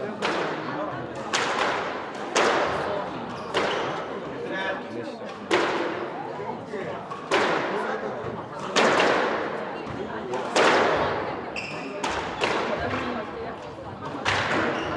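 Squash ball being struck by rackets and hitting the court walls during a rally: about nine sharp cracks, one every one to two seconds, each ringing on in the echoing court. There is a short squeak about eleven and a half seconds in.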